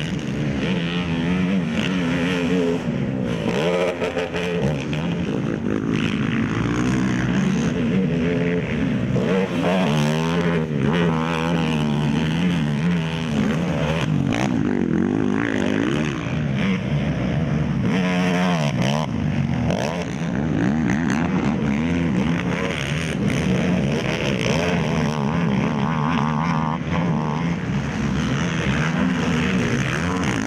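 Racing quad (ATV) engines revving hard, their pitch rising and falling again and again as the quads accelerate, shift and go over jumps, often with more than one engine running at once.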